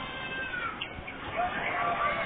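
A young child's high-pitched vocal squeals: a short falling squeal under a second in, then a longer drawn-out whine near the end, over other voices in the background.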